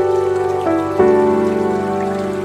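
Soft solo piano background music: gentle sustained chords ringing out, with new notes struck about a second in.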